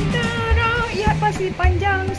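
Background music: a melody over bass notes and a drum beat.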